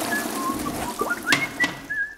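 A few short, high, whistle-like chirps, several sliding upward in pitch, with a couple of sharp clicks a little past halfway: a cartoon sound effect.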